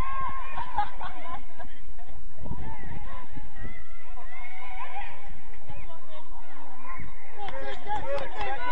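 Distant shouted calls from players on a football pitch, short and rising and falling, overlapping one another, over a rough low rumble of wind on the microphone.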